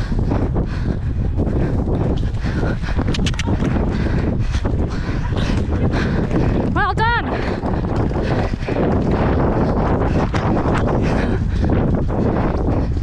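Heavy wind rushing on the camera microphone as a horse gallops cross-country and jumps a fence, with faint irregular knocks through it. About seven seconds in comes one short high-pitched call that wavers up and down.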